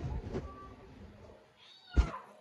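A short, high-pitched cry near the end, cut off by a sharp click.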